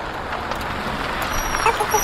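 Cartoon van engine sound effect, running steadily as the van drives.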